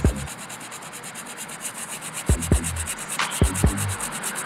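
A brush scrubbing the suede upper of a sneaker in quick, even back-and-forth strokes.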